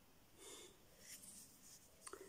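Near silence, with a couple of faint, soft breaths close to the microphone in a pause between whispered phrases.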